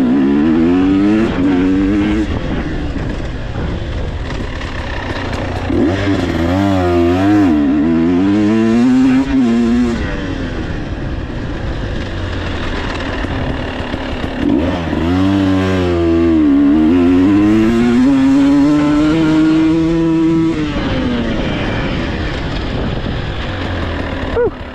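Husqvarna TE 300 Pro two-stroke single-cylinder enduro motorcycle being ridden, its engine revving up hard in three bursts: at the start, about six seconds in and about fifteen seconds in. The pitch rises and falls with the throttle, with lower, steadier running between the bursts.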